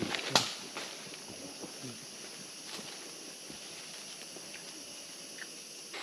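Quiet rainforest ambience: a steady high hiss over faint rustling and footfalls on the leaf-litter path, with one sharp snap just after the start.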